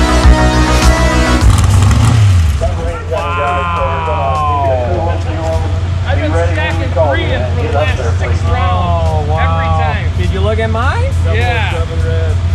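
Background music that stops about a second and a half in, leaving a vehicle engine running at a steady idle with indistinct voices talking over it.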